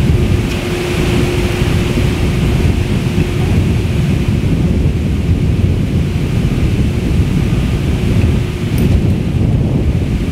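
Wind buffeting the camera microphone: a loud, steady low rumble with no speech.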